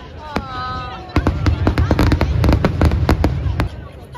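Aerial fireworks going off in a rapid volley of sharp bangs and crackles, starting about a second in and stopping shortly before the end.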